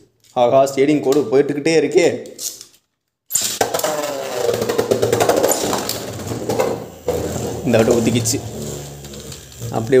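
Beyblade Burst spinning top whirring steadily in a plastic stadium bowl, with excited voices over it. The sound cuts out completely for a moment about three seconds in.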